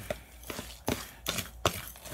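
Light handling noises: four or so sharp clicks and knocks with faint rustling between them.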